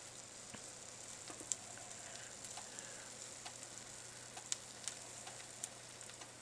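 Eggs frying in butter in a nonstick skillet: a faint, steady sizzle with scattered small pops and crackles.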